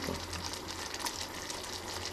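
Thick ketchup-and-chili buffalo sauce simmering in a stainless steel saucepan on a gas burner, bubbling steadily with a soft hiss, over a low steady hum.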